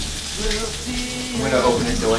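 Food sizzling in a frying pan on a kitchen stove, a steady hiss; a man's voice comes in during the second half.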